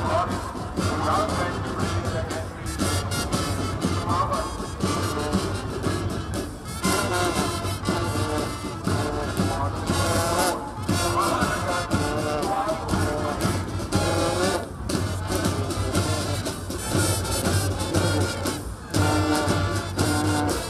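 A school brass band playing a marching tune, brass instruments over a steady drum beat.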